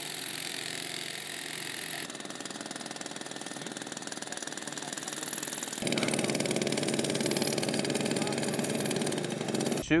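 An engine running steadily, its sound shifting with each cut, with a fast even pulse over the last few seconds.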